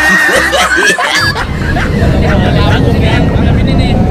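Young men snickering and laughing amid talk, with a steady low rumble in the background coming in about a second in.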